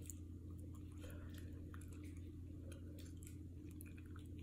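A person chewing a mochi ice cream with the mouth close to the microphone: soft, irregular mouth clicks and smacks, over a faint steady low hum.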